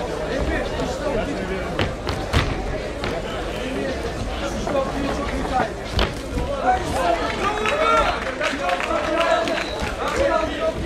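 Indistinct shouting from people around an MMA cage, with a few sharp smacks of strikes landing; the loudest is a high kick connecting about six seconds in.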